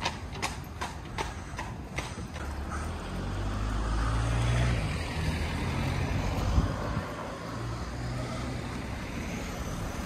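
A horse's hooves clip-clopping on asphalt as a horse-drawn carriage passes close by, the regular strikes fading out about two seconds in. Then a motor vehicle's engine rumbles past, loudest around the middle, with a single sharp knock a couple of seconds later.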